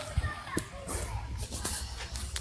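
Faint background noise from a participant's open microphone: a low hum with faint distant voices and a few light clicks.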